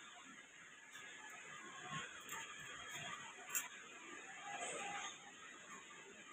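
Quiet room with faint, indistinct sound from a television's cricket broadcast while its volume is being adjusted, and a single short click about three and a half seconds in.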